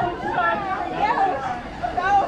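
People chatting, voices talking with the words unclear.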